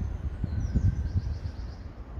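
Outdoor wind buffeting the microphone as an uneven low rumble, with a faint high bird chirping about half a second in.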